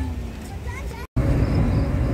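Roadside traffic noise with a faint voice, cut off suddenly about a second in; after that, the louder, steady low rumble of a car driving, heard from the moving vehicle.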